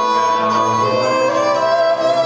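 Violin bowed live, holding long notes and moving to a new pitch about a second in, over a steady low tone.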